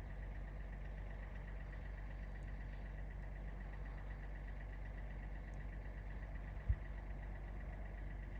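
A steady low mechanical hum, like an idling engine, with a faint thin whine above it. One brief low thump near the end.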